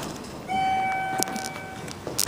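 Elevator's electronic chime: one steady tone that starts about half a second in and fades slowly over about a second and a half.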